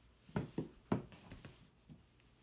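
A few short, sharp taps and rustles from a paper booklet being handled, mostly in the first second and a half, against quiet room tone.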